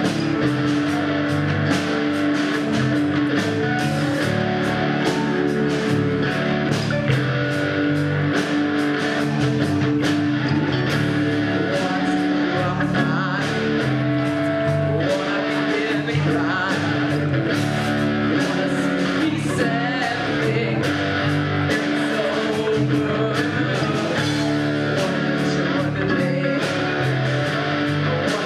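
A rock band playing live: two electric guitars, bass guitar and a drum kit, with cymbals struck on a steady beat.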